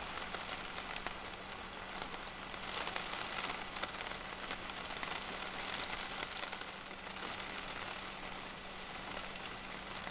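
Steady rain falling on canal water: an even hiss dotted with many small ticks of drops landing.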